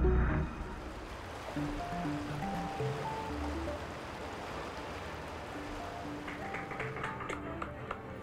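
A loud music cue cuts off about half a second in, then rushing river water runs as a steady wash under soft, sparse background music notes.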